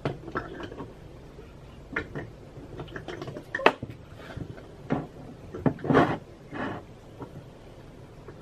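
Irregular small clicks, knocks and rustles of dollhouse toys and furniture being handled and moved about.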